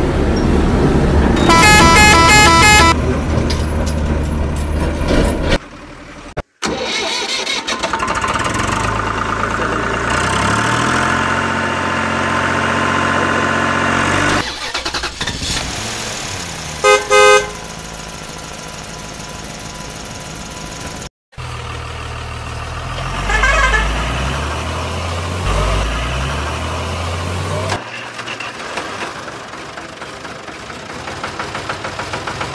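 Recorded truck engine running and revving, with rapid bursts of horn beeps near the start and again a little past halfway. The sound breaks off sharply twice where separate clips are cut together.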